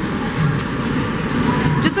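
Steady background din of a large indoor hall, with indistinct voices and a short sharp sound near the end.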